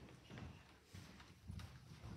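Faint footsteps on a carpeted floor: about three soft thuds, a little over half a second apart.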